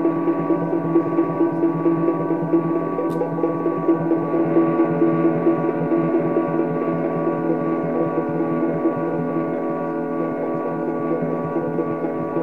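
Live ambient drone music: a held chord of many steady tones, the lower notes wavering with a fast pulse, easing slightly in level in the second half.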